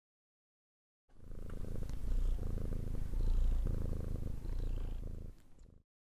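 A low, rapid, pulsing rumble in three swells, starting about a second in and stopping shortly before the end.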